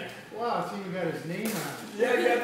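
Several people's voices talking and laughing over one another around a table, with one brief sharp noise about one and a half seconds in.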